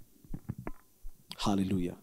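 A man preaching: a short pause holding a few faint clicks, then a single brief spoken word about one and a half seconds in.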